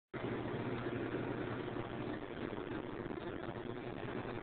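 Steady low hum with a hiss over it, unchanging throughout: background noise of the room.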